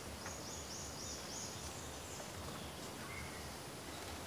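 Quiet background ambience with a short run of about four high-pitched chirps in the first couple of seconds, and a faint brief whistle-like note about three seconds in.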